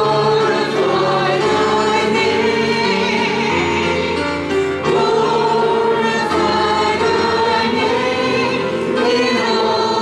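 Church congregation singing a hymn together, a woman's voice leading at the microphone, in long held notes.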